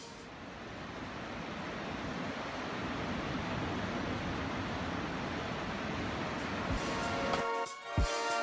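Ocean surf: a steady wash of small breaking waves that swells slowly. Background music with a beat comes back in near the end.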